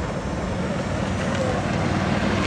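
Low, steady rumble of city traffic, growing slowly louder.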